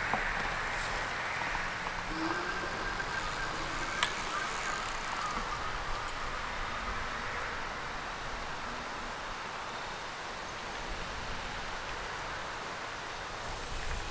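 Outdoor air and a fat-tire e-bike riding away across grass, heard from a distance as an even, faint hiss. A faint steady whine runs for a couple of seconds, ending with a sharp click about four seconds in.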